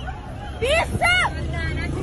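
Two loud, high-pitched shouts from people in a street crowd, about half a second and a second in, over crowd babble and a steady low rumble.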